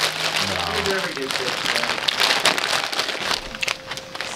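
A large plastic snack bag crinkling and crackling as it is handled and squeezed, easing off near the end.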